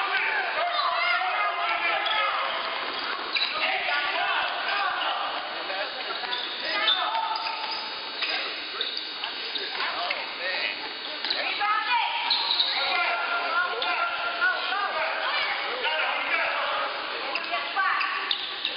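Basketball bouncing on a hardwood gym floor during play, repeated knocks echoing in a large gym, over a steady background of spectators' and players' voices.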